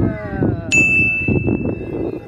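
A single bright ding, a bell-like edited-in sound effect, struck about two-thirds of a second in and ringing on as one steady high tone for over a second.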